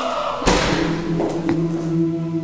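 A single thump about half a second in, then a youth choir holding a steady sustained chord in a large hall, the tuning exercise of a warm-up in which the singers tune to each other.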